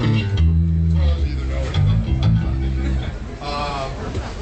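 Electric bass guitar playing a few loose, held low notes with some electric guitar, not yet in a steady groove. A voice is heard briefly near the end.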